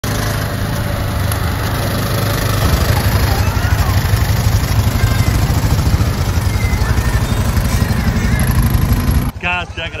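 Motorcycle engine running on the move under a rush of wind and road noise, growing a little louder about a quarter of the way in. It cuts off abruptly just before the end, where a man starts talking.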